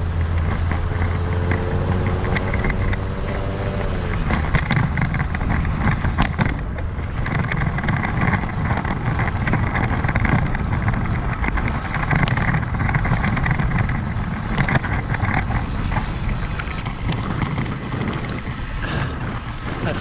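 Wind rushing over the microphone of a road bike in motion, with tyre and road noise. For the first four seconds a motor vehicle's engine hums alongside, its pitch dropping slightly before it fades.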